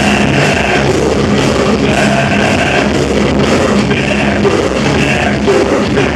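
Live metal band playing loudly with no singing: distorted electric guitars and bass hold chords that change about once a second, over drums.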